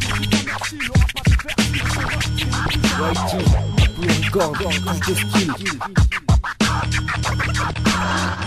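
Hip-hop beat with a DJ scratching a record on a turntable: quick back-and-forth pitch sweeps cut over a steady bass line, with brief drop-outs about six seconds in.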